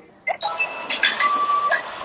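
Short electronic chime: a brief high tone about half a second in, then a louder, steadier tone held for about half a second, ending near the end.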